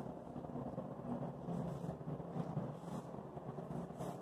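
Faint rustling of a sheet of office paper being handled and folded in half, a few soft crinkles over a low steady room hum.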